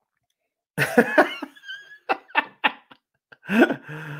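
A man coughs sharply about a second in, after a sip of whiskey, then breaks into a few short, breathy bursts of laughter.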